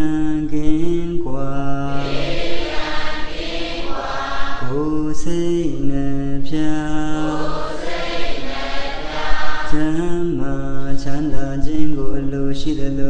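A monk's single male voice chanting in a slow, melodic recitation, holding long notes that step up and down between a few pitches. The chanting comes in phrases with short breaks.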